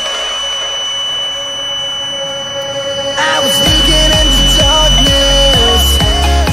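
A steady high-pitched beep from the indicator's piezo buzzer, its alarm that the tank is full, sounding over background electronic music. The music drops back for the first three seconds, then the beat comes back in.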